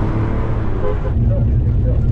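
Steady low rumble of engine and road noise heard from inside a moving car's cabin.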